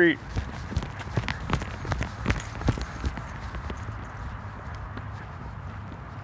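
Brisk footsteps on an asphalt road, about three steps a second over the first three seconds, then fading under a low steady rumble.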